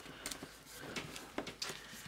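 Faint paper rustling with a few light, scattered ticks and crackles from a sheet of flower stickers being handled and a sticker being pressed down onto a paper planner page.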